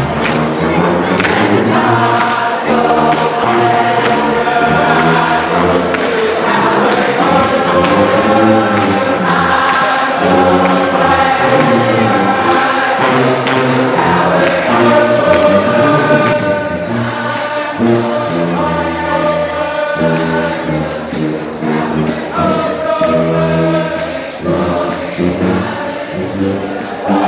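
Marching band's brass section of trumpets, trombones and sousaphones playing a slow piece in long, held chords.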